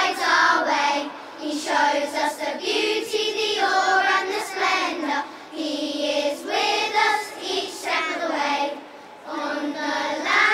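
Children's choir singing a hymn-like song together in phrases, with short breaths between the lines.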